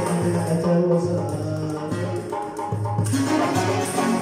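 Ensemble of banjos, acoustic guitar and lute playing a plucked instrumental passage, with a hand-held frame drum keeping the beat and a low line of notes moving in rhythm beneath.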